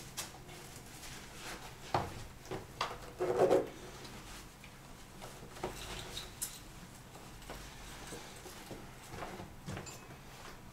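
Scattered knocks, clicks and rustling of someone putting on shoes and handling things in a small hallway. The loudest is a brief scrape about three and a half seconds in.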